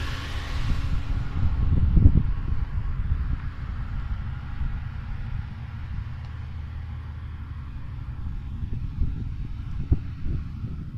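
Wind buffeting the microphone, a fluctuating low rumble that is strongest about two seconds in and then eases.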